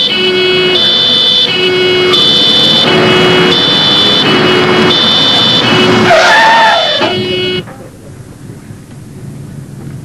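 Police car siren sounding a two-tone hi-lo wail, the two pitches alternating about every three quarters of a second, with a brief wavering squeal about six seconds in. The siren cuts off suddenly a little before the end, leaving quieter road noise.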